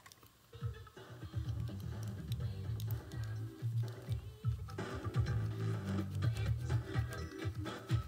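Music playing back from a cassette tape in a Sony Walkman WM-EX610 cassette player, starting about half a second in. The playback is not very loud, which the repairer takes as a sign that the volume potentiometer needs cleaning.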